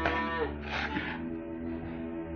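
Cattle mooing, a call falling in pitch at the start and another shorter one just under a second in, over background music with sustained low notes.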